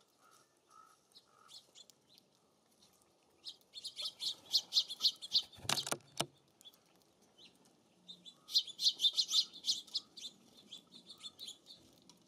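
Small songbird giving two bursts of rapid chirping notes, each about two seconds long, a few seconds apart. A sharp knock falls between the bursts, and faint short call notes are heard early on and near the end.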